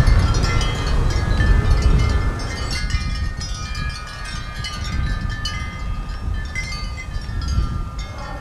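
Wind chimes tinkling, many small bell-like tones overlapping, over a heavy low rumble of wind on the microphone that eases about three seconds in.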